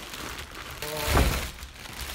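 Crinkling plastic wrap as a heavy tripod is pulled out of its bag, with a short tone and a heavy low thud about a second in.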